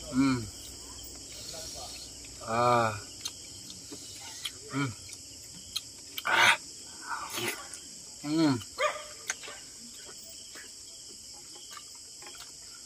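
People eating balut with several short hummed "mm" sounds of enjoyment and wet mouth smacks and clicks in between. A steady high trill of crickets runs underneath.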